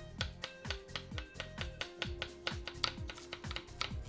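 Chef's knife slicing carrots into rounds on a wooden cutting board: quick, regular taps of the blade on the board, about four a second, with background music.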